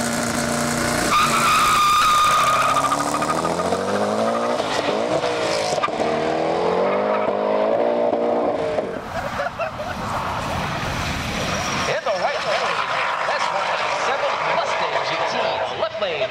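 Twin-turbocharged 4.6-litre Ford Cobra V8 of a drag Mustang launching hard off the line and accelerating down the strip: the engine note climbs in pitch through the gears, breaking at each shift. It is loudest in the first few seconds and fades into the distance after about nine seconds.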